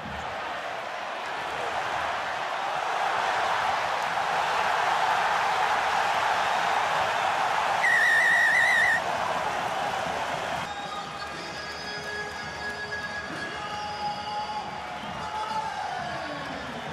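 Stadium crowd cheering, swelling as a try is scored, with a referee's pea whistle trilling for about a second at the try. After a sudden cut, quieter crowd noise with a few steady held tones.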